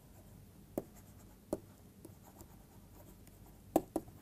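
Stylus writing on a pen tablet: faint taps and scratches of the pen tip as words are handwritten, with a few short ticks and two close together near the end.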